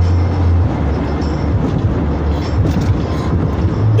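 Steady low rumble with an even hiss of road and engine noise, as heard inside a moving car's cabin.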